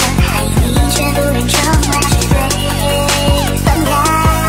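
Electronic music with a steady beat and deep, sustained bass.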